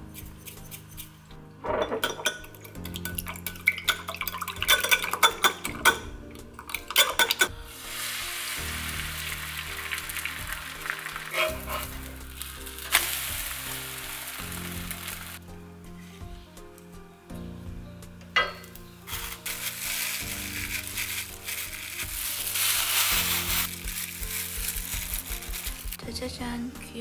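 Eggs beaten with chopsticks in a glass mug, a rapid clinking of wood on glass for a few seconds, then the beaten egg sizzling steadily as it fries into a thin sheet in a nonstick pan.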